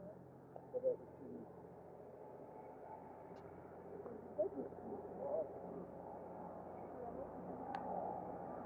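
Faint outdoor ambience: a low steady hum with a few short, distant calls, loudest about a second in and again around four to five seconds in.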